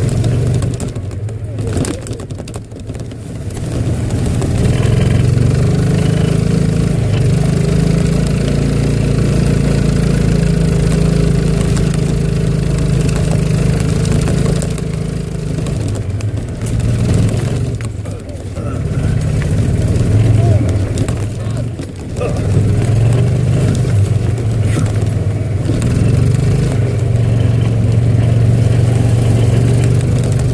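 Golf cart motor running as the cart drives along a trail, its pitch rising as it picks up speed and dipping briefly a few times as it eases off.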